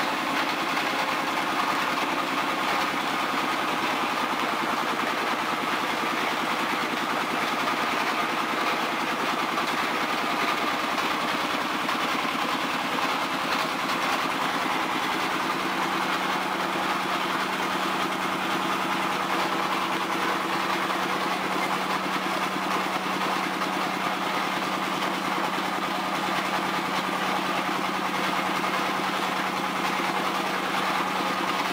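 Mechanical oil expeller running: a steady, unbroken machine hum with an even whine, its low tone growing a little stronger about halfway through.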